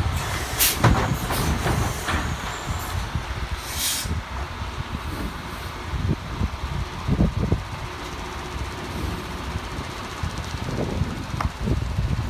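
Peterbilt garbage truck's automated side-loader arm setting an emptied cart down with a few sharp clunks, then a short hiss of the air brakes releasing about four seconds in. After that the diesel engine rumbles steadily as the truck pulls away.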